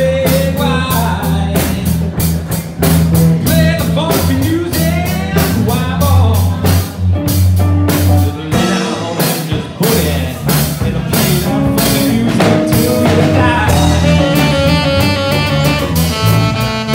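Live band playing: a male singer into a microphone, backed by electric guitar, electric bass and a drum kit keeping a steady beat.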